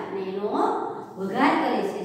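A woman's voice in a sing-song delivery, rising in pitch twice.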